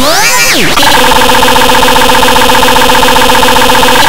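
Heavily distorted, digitally processed audio: a pitch sweep rising over the first second, then a loud, steady buzzing drone of many stacked tones held flat.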